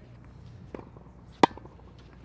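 Tennis ball struck by a racket on a forehand volley: one sharp pop off the strings about a second and a half in, after a fainter pop less than a second earlier.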